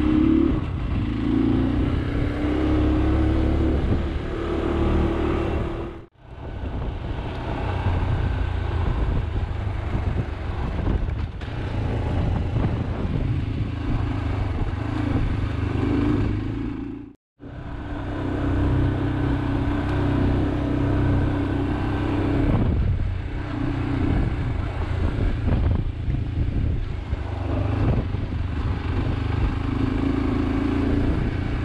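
Motorcycle engine heard from on board while riding at low speed, its pitch rising and falling with the throttle, with road and wind noise underneath. The sound cuts out abruptly twice, about a third of the way in and again past the middle, then resumes.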